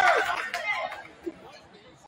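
Gym chatter of many voices from players and spectators, loud at first and dying down over the first second after the point. A single short knock sounds about a second in.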